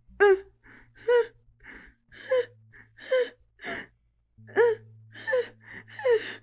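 A woman's short, pained gasping cries, about ten in quick succession, several of them bending down in pitch.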